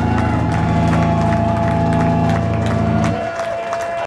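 A live rock band holds its final chord on electric guitars, with a high ringing tone sustained above it, while the crowd claps and cheers. The low chord cuts off about three seconds in, leaving the ringing tone and the clapping.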